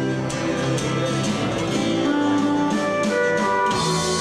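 A live band playing a country-rock song: strummed acoustic guitar over electric guitar, bass and drums.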